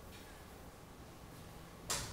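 Faint brushing of a chalkboard eraser on the board, then near the end a single sharp knock as the eraser is set down on the chalk tray.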